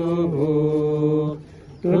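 A voice singing a slow song in a chant-like style, holding one long note that breaks off about one and a half seconds in and comes back in just before the end.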